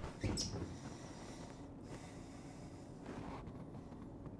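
Quiet room tone with faint rustling as a person shifts position in an empty bathtub.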